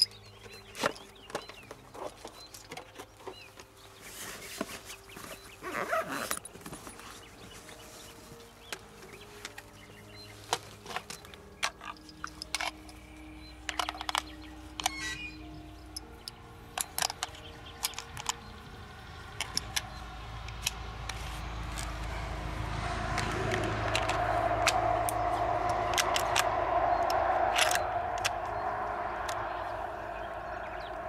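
Cartridges handled and pressed one by one into a rifle's detachable magazine, a string of short sharp metallic clicks. Background music plays under them and swells louder in the second half.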